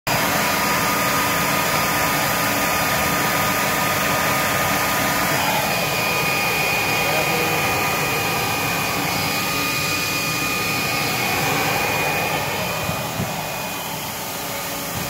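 Advance Convertamatic floor scrubber's motor running with a steady whir; a thin high whine joins about five seconds in.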